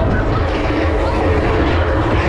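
Steady rumbling rush of wind buffeting an onboard camera's microphone as a spinning fairground ride whirls it round, with faint voices underneath.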